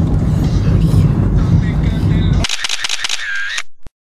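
Steady low rumble of a car's cabin while riding in the back seat. About two and a half seconds in, it cuts off abruptly and gives way to a short outro sound effect: a quick run of sharp clicks and a brief tone, then a single last click.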